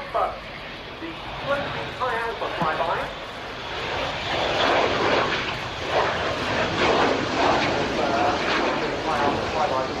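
Eurofighter Typhoon's twin EJ200 turbofan jet engines as the fighter flies close past. The jet noise builds from about four seconds in and stays loud.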